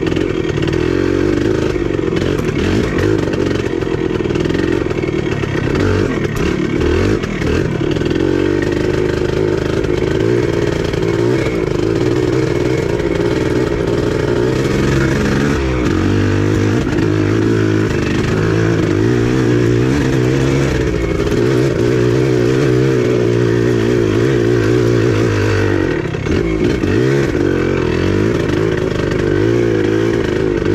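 Yamaha IT400 two-stroke enduro dirt bike engine running continuously as the bike is ridden along a trail, its pitch rising and falling with the throttle and dropping briefly near the end.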